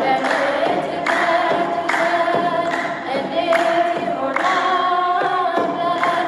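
A woman singing an Ethiopian Orthodox mezmur, a hymn to the Virgin Mary, through a microphone, in long held, ornamented notes.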